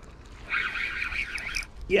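Spinning reel whirring for about a second while a hooked pike is played on a bent rod, the sound of a fish being fought in.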